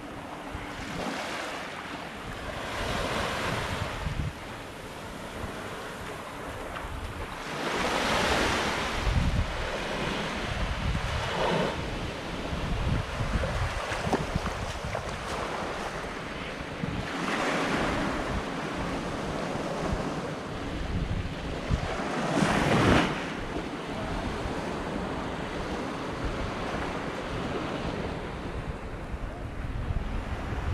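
Small waves washing onto a sandy shore, swelling about four times, with wind rumbling on the microphone.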